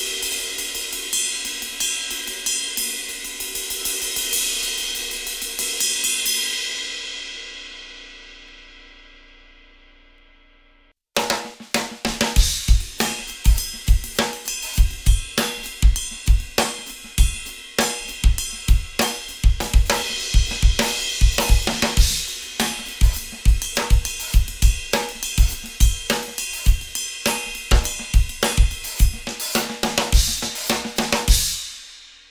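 Zultan 21-inch AEON Light Ride, a hand-hammered B25 bronze ride cymbal, played alone with a stick for about six seconds, then left to ring and fade out. About eleven seconds in, a full drum kit groove starts abruptly, with bass drum, snare and cymbal strikes in a steady rhythm to the end.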